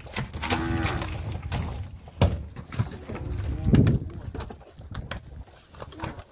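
Low, drawn-out animal calls: one about half a second in and a louder, deeper one near four seconds, with a sharp knock a little after two seconds.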